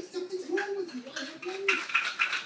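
A young child's high voice vocalizing in wordless, arching sounds. Near the end comes a rapid run of light clicking or clattering.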